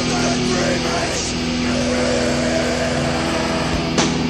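Heavy hardcore music: distorted electric guitars ring out a sustained, droning chord, with one drum hit near the end.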